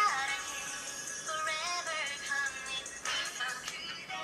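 A song playing: music with a sung vocal line.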